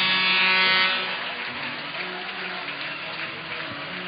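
Ice-rink game audio: a steady buzzing hum fades out about a second in, leaving a low, even background noise of the arena.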